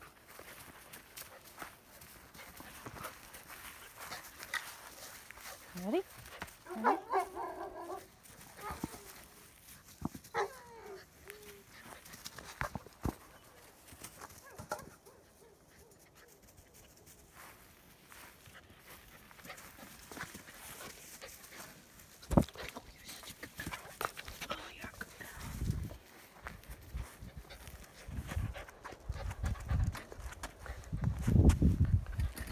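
A German Shepherd puppy whining a few times, short calls that slide up and down in pitch, about a third of the way in, amid light knocks and rustles of play in dry grass. Near the end a low rumbling builds as the puppy tussles close by.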